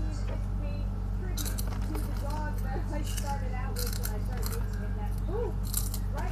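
Crunchy puffed snack chewed close to a small handheld microphone, heard as three short crackly bursts, over a steady low electrical hum from the microphone.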